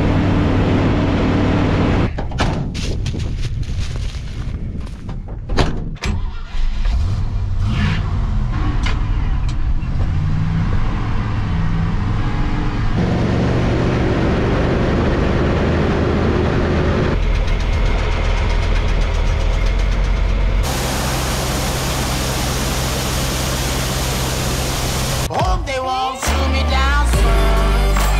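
Old GMC grain truck's engine running as it drives on gravel, with tyres crackling over the stones, in several short cuts. Near the end, a steady wash and drone as soybeans pour from the truck box into the hopper of a running grain auger.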